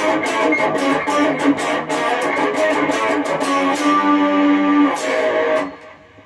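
Distorted electric guitar with chorus and compression playing a fast 80s-metal-style riff of power chords on the higher strings, rapidly picked. About four seconds in it lets a chord ring briefly, then stops just before the end.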